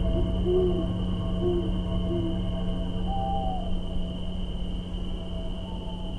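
An owl hooting a few times, three short low hoots about a second apart and then one higher call, over a steady humming drone of a dark ambient soundtrack.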